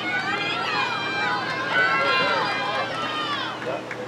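Several people shouting and calling out at once, their high voices overlapping into a steady stream of calls, loudest about two seconds in.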